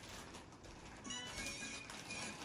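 Faint high-pitched, music-like tones starting about halfway through, over a low hiss.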